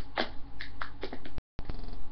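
Cup-song rhythm played with hands and a cup: a steady pattern of claps, slaps and the cup knocking on a table, about two to three hits a second, briefly cutting out about one and a half seconds in.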